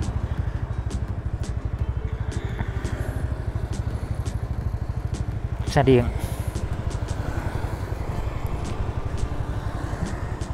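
Motor scooter engine running steadily at low road speed under the rider's camera, a low rumble with a rapid, even pulse.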